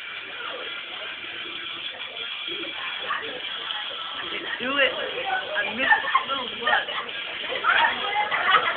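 Indistinct talking and laughter from several people at once, busier and louder in the second half.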